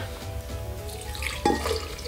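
Whiskey being poured from a glass into a glass blender jar, the liquid splashing in from about one and a half seconds in, over soft background music.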